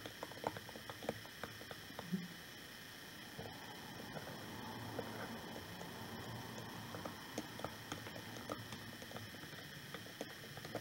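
A utensil stirring water, glue and glitter in a small glass jar, making soft, irregular clicks and scrapes against the glass, over a faint steady hum.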